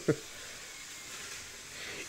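A man's short laugh, then a steady, faint hiss with no distinct events.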